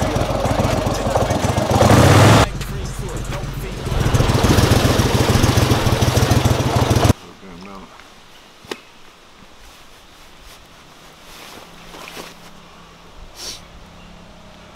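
A small boat's outboard motor running loudly under way. About seven seconds in the sound drops suddenly to a quiet outdoor background, broken by a single sharp click.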